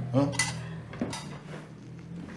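Dishes and cutlery clinking on a dining table as tableware is handled, with two sharp clinks about half a second and a second in.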